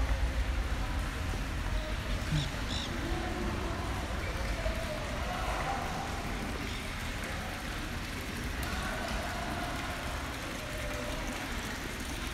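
Faint murmur of visitors' voices in a large hall over a steady low rumble.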